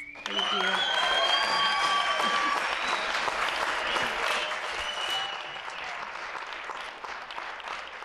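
Audience applauding and cheering, with a few high whoops in the first seconds; the applause is loudest at first and slowly tapers off.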